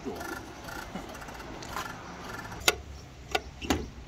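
Three sharp plastic clicks in the second half as a campervan's shore-power plug is pushed into a campsite electrical hookup socket and the hinged lid of the plastic socket box is handled.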